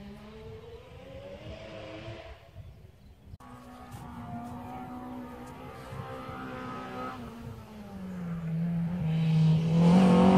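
Rally car engines heard from a distance: first a car revving away, its note climbing, then after a cut another car approaching, its engine note rising and falling through the gears and growing much louder near the end.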